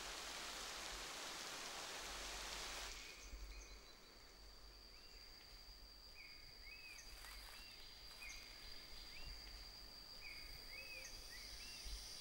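Faint steady rain hiss for the first three seconds. Then quieter tropical forest ambience: a steady high insect drone, with a bird giving short, repeated chirping calls in small groups.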